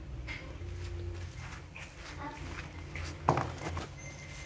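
Faint short squeaks and scuffling from a baby monkey scrambling across the floor, over a steady low hum, with one sharp knock about three seconds in.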